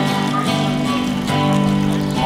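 Acoustic guitar strumming a sustained chord, with a fresh strum just over a second in, between sung lines of a song.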